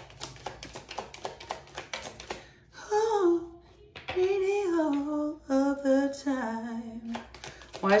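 A deck of tarot cards being shuffled by hand, a quick run of soft clicks for the first two seconds or so. Then a woman hums a slow tune with her lips closed for about four seconds.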